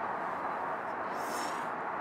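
Steady low background noise of an outdoor setting, with a brief faint high hiss a little over a second in.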